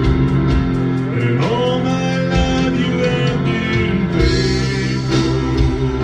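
A gospel song with instrumental backing and a singer. The voice slides up about a second and a half in and holds a long note.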